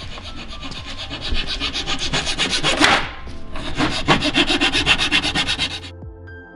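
A rapid, even rasping scrape, about ten strokes a second, breaking off briefly about three seconds in.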